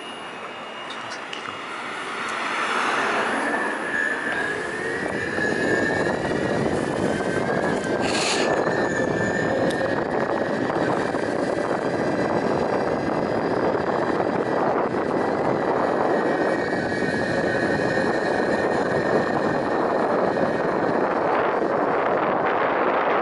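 Electric skateboard motor whining under load while climbing a hill, with its wheels rolling on asphalt. It builds up over the first few seconds, then holds a steady high whine over a rough rolling noise.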